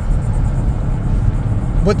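Steady low rumble of road and engine noise inside a car's cabin while driving at highway speed.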